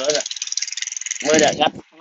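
Petrol push lawn mower running steadily some way off, heard as a fast, even rattle under a man's voice.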